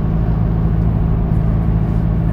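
Car engine running steadily, heard from inside the cabin as a low, even hum.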